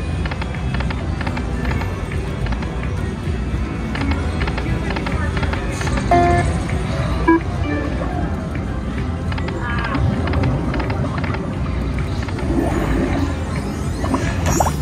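Whales of Cash video slot machine spinning its reels, with its electronic music and short beeping tones as the reels stop, a few spins in a row. Under it runs a steady casino din of other machines and background chatter.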